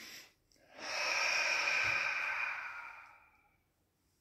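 A man's audible breathing during a breathing exercise: a soft breath ends just after the start, then about a second in comes a long, louder breath, most likely the breath out, that fades away over about two and a half seconds.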